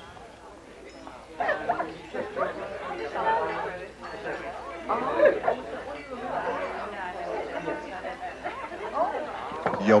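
Diners' chatter in a restaurant dining room: many voices talking at once with no clear words, with a laugh about two seconds in.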